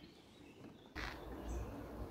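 Faint outdoor ambience with small birds chirping. About a second in, the background abruptly turns louder with a low rumble, the chirping going on above it.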